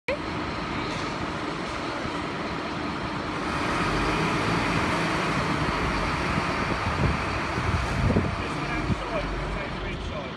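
Fire engine's diesel engine running as the heavy rescue tender drives into the station yard, getting louder about three and a half seconds in, with a few low thumps near the end.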